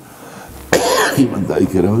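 A single sharp cough about three-quarters of a second in, running straight into speech.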